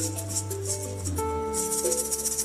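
Live acoustic band music: held melodic notes over a steady bass line, with a shaker rattling in rhythm that grows busier near the end.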